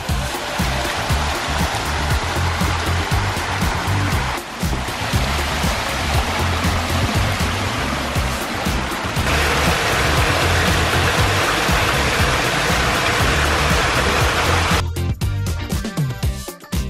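Water running and splashing down a rock-lined stream of a pondless water feature, a steady rushing that shifts in level about four and nine seconds in and stops near the end. Background music with a steady beat plays throughout.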